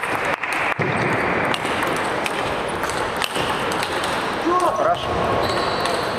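Steady crowd noise and voices in a large sports hall, with a few sharp single clicks of a table tennis ball between points and a short call from a voice near the end.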